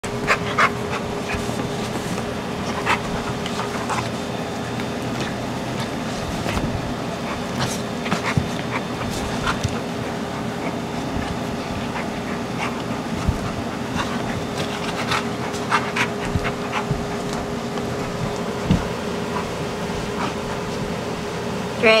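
Two dogs play-fighting, with short, sharp mouthing, snapping and vocal sounds scattered throughout, over a steady background hum.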